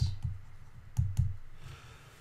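Computer mouse clicking: sharp clicks in two pairs, one pair at the start and another about a second in.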